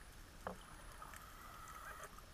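Faint underwater ambience: a low steady rumble, a short sharp chirp that drops in pitch about half a second in, and a thin steady whine through the second half.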